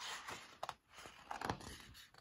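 A page of a hardcover picture book being turned by hand: paper rustling with a few light clicks.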